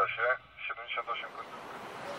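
A man speaking Polish in short phrases for the first second or so. A steady outdoor street noise then rises and takes over near the end.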